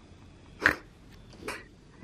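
Two brief, sharp vocal sounds from a person, like a short laugh or squeal: a louder one a little over half a second in and a fainter one about a second and a half in.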